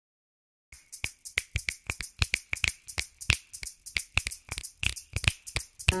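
A quick, uneven run of sharp clicks or snaps, about five or six a second, starting under a second in. Glockenspiel notes begin ringing right at the end.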